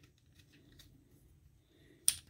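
Near silence, with a few faint clicks of the plastic parts of a Transformers Studio Series 86 Jazz action figure as its arms and wheels are folded in by hand.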